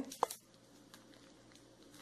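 Gold metallic foil candy wrapper crinkling and rustling faintly as it is twisted and pressed around a chocolate cone, with a short sharp sound about a quarter second in.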